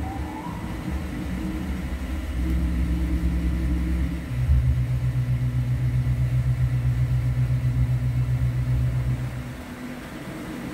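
Small electric drive motor of a motorised Schwerer Gustav railway-gun model humming as it works the screw-driven shell-loading mechanism. The hum drops to a lower, steady, slightly pulsing pitch about four seconds in and stops shortly before the end.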